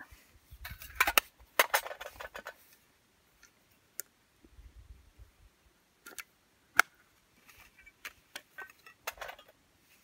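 Small hard items clicking and clinking as a little metal tin and its contents are handled, in scattered short bunches with one sharp click about seven seconds in.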